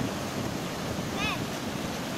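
Ocean surf breaking and washing through shallow foam, a steady rushing noise, with wind buffeting the microphone.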